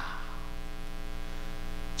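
Steady electrical mains hum, an even buzz with many overtones, from the microphone and sound system.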